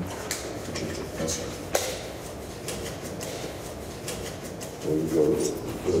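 Handling noise at close range: rustling and small clicks as hands and clothing move, with one sharper click a little under two seconds in, under a brief spoken exchange.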